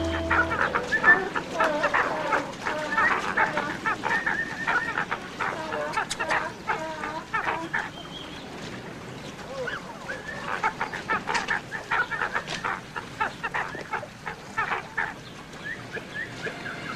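African penguins calling, a run of loud pitched brays in two bouts with a short lull in between.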